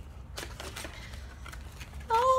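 Faint rustling and a few light clicks of a printed cardboard makeup gift box being handled and lifted.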